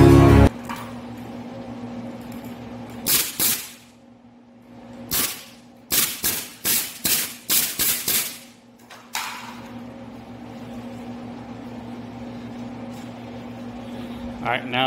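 Harbor Freight pneumatic combination brad nailer and stapler firing staples into a pine 2x4 frame, about eleven sharp shots: two about three seconds in, a quick run of eight between five and eight seconds, and a last one about nine seconds in.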